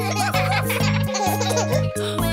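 Upbeat children's song backing music with a steady bass beat, over which cartoon children's voices giggle and call "woof woof".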